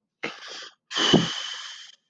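A man laughing: a short breathy laugh, then a longer, louder one that fades out near the end.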